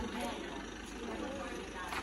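Faint, indistinct voices talking in the background over low, steady background noise.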